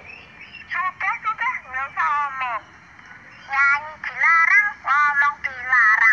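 A child's high-pitched voice in short phrases with brief pauses between, at the pitch of young children, hovering between speech and sing-song.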